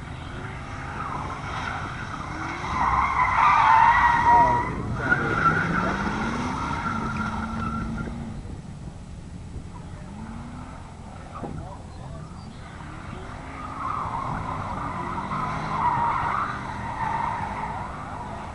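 A car's tyres squealing as it slides hard around the cones, with the engine revving under it. The loudest, longest squeal comes about three to five seconds in, and a second one near the end.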